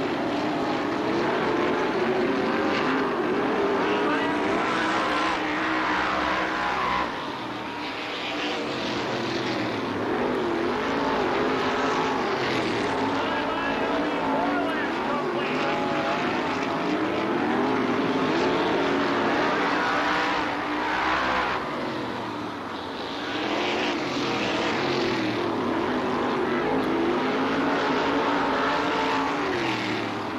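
Winged dirt-track sprint cars racing, their V8 engines rising and falling in pitch as they go around the oval. The sound dips briefly about seven seconds in and again about twenty-one seconds in.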